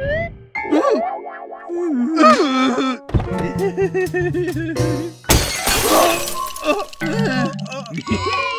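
Cartoon soundtrack of playful music and wordless character vocal sounds. About five seconds in comes a brief burst of shattering glass as the car's windshield breaks apart.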